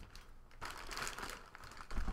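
Thin plastic bags crinkling and rustling as hands pull and shift them, with the crackling starting about half a second in.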